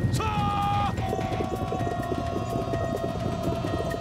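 A man's drawn-out battle cry of "杀" ("kill!"), lasting under a second, then the dense drumming of many galloping cavalry horses' hooves under background music holding one long note.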